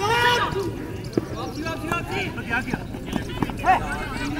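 Men shouting and calling out to one another, with a couple of sharp knocks of a football being kicked about a second in.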